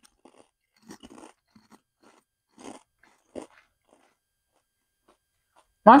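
Kettle-cooked potato chips being bitten and chewed: a few faint, separate crunches in the first half, then quiet.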